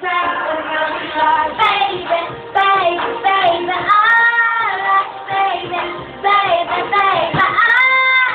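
A young boy singing solo, with long held notes about four seconds in and again near the end.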